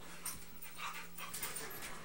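Two pit bull dogs play-fighting on a bed: a run of soft, short noises from their tussle.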